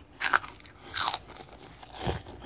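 A child biting into and chewing a crisp snack close to the microphone: two short crunches about a second apart.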